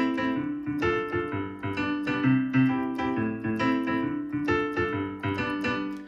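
Digital piano playing a tune over the I–vi–ii–V (1-6-2-5) chord progression in C major: right-hand chords and melody over left-hand bass notes, in a steady rhythm of repeated notes.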